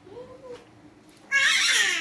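A young baby fussing: a soft short whimper early on, then a loud, high wailing cry about a second and a half in that falls in pitch.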